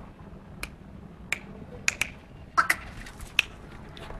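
A series of sharp, brief clicks, about seven in three seconds at irregular spacing, some in quick pairs.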